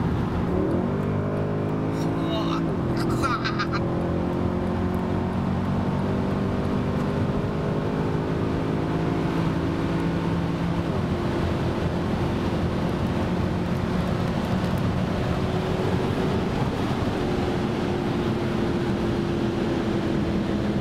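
Mercedes-Benz C63 AMG's naturally aspirated 6.2-litre V8, heard from inside the cabin over road noise, pulling at speed. Its pitch climbs steadily, with two upshifts that drop it back, about 3 and 11 seconds in.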